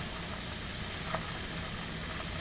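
Cod fillets sizzling on the hot grill grate with a steady low hum from the grill, and a faint tick about a second in.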